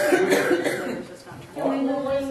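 Voices talking, with a cough at the start.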